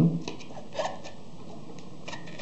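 Faint rubbing and a few light clicks of a circuit board being slid by hand into a plastic data-logger enclosure, with one brief scrape a little under a second in.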